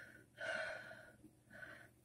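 A person breathing audibly, three soft breaths with no voice in them, the middle one the longest.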